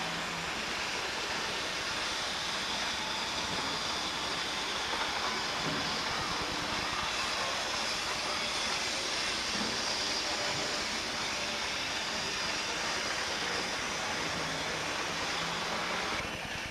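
A small electric model train running around its track layout: a steady, even whirring hiss with no breaks.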